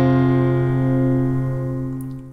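Acoustic guitar's closing strummed chord ringing out and slowly fading away.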